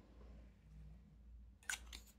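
Near silence with a low steady room hum. Near the end there is one brief handling noise, as the fountain pen and hand move over the desk.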